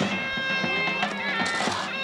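Bulgarian folk music with wind instruments holding steady notes over a drum, and a drum stroke about a second in. A short rush of noise comes just before the end.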